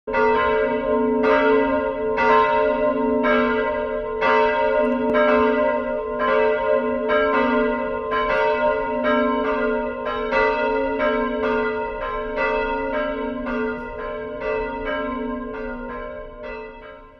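Church bell ringing, struck about once a second, its tones hanging on between strokes so the ringing runs continuously, growing gradually fainter toward the end.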